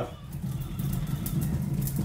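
Stone mortar and pestle grinding whole spices: a steady gritty rumble of stone on stone, with a few faint crackles as the hard seeds break.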